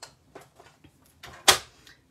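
A few light clicks and paper rustles, then a single sharp clunk about one and a half seconds in as a plastic paper trimmer is moved and set down on a wooden table.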